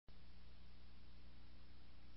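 Faint steady hiss with a low electrical hum: background noise from an analogue home-video transfer, starting a split second in.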